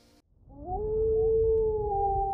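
Wolf howl sound effect: one long call that rises about half a second in and then holds steady, over a low rumble.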